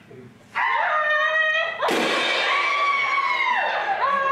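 Performers' voices wailing in long, pitch-bending cries, with a crash of hand cymbals about two seconds in whose ring runs on under the cry.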